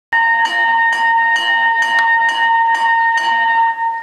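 A loud, steady electronic tone with a sharp beat a little over twice a second and a changing low note underneath. It starts suddenly and fades out at about four seconds.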